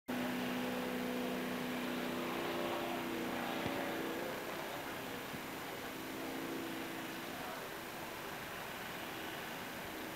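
Faint, steady drone of several racing powerboat engines running together, heard as a few held pitches that fade after about four seconds.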